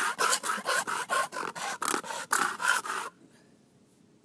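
Small metal food can rubbed top-down on a concrete driveway, scraping in quick back-and-forth strokes, about four to five a second, grinding away the rim seam to open the can without an opener. The scraping stops suddenly about three seconds in.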